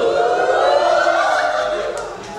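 A group of people making one long, loud vocal call together, many voices overlapping, as they rise from a crouch with arms thrown up; the pitch rises a little and then falls away near the end.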